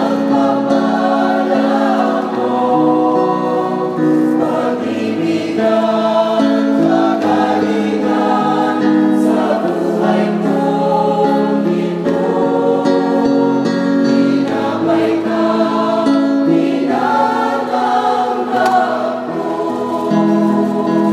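Mixed choir of men's and women's voices singing a Tagalog communion hymn, with long notes held as full chords.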